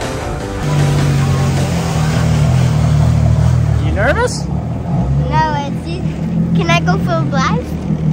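Jet ski engine running steadily at low speed, a low even hum that starts about a second in, with a child's voice over it in the second half.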